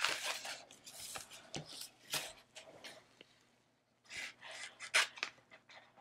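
Hands handling a sheet of contact paper and leather on a cutting mat: crinkly rustling in short bursts, with a pause around three to four seconds in.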